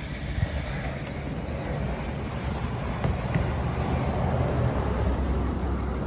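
Low, steady rumble of a motor vehicle engine, growing gradually louder.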